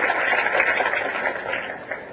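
Noise from a lecture audience, likely clapping or laughter, dying away over the two seconds during a pause in the talk.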